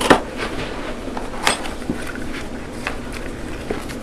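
Cardboard box being opened by hand: a few short scrapes and rustles of the flaps being pulled open, the loudest at the very start and another about a second and a half in.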